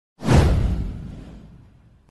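An intro whoosh sound effect with a deep rumble underneath. It comes in sharply and fades away over about a second and a half.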